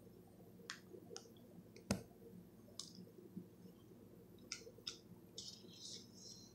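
Faint, scattered clicks and taps of stiff trading cards being handled and laid on a pile, with one sharper click about two seconds in and a light rustle near the end.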